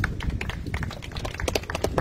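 Scattered handclaps from a crowd: a run of irregular, sharp claps, about five a second.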